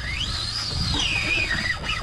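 A fishing reel's drag whining as the hooked tuna pulls line out: one continuous whine that rises in pitch over the first half-second, then falls back down through the rest, over a low steady rumble.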